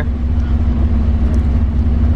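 Steady low engine drone with a constant hum, heard from inside while underway.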